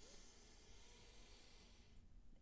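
Faint, steady hiss of a deep, slow breath drawn in through the nose.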